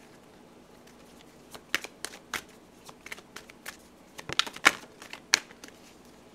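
A deck of tarot cards being shuffled by hand: a string of quick, irregular card clicks and flicks, starting about a second and a half in and bunching up toward the end.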